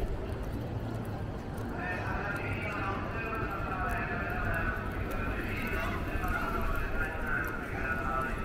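Footsteps on wet paving over a steady hum of city street noise, with people's voices talking from about two seconds in.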